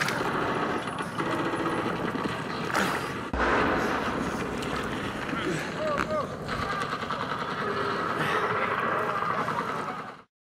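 Indistinct shouting voices over a dense, rough wash of outdoor noise, with a couple of sharp knocks about three seconds in.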